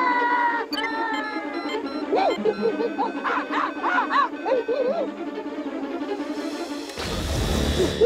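Cartoon ape-men hooting and chattering in short rising-and-falling calls over background music, with a rushing noise swelling in about a second before the end.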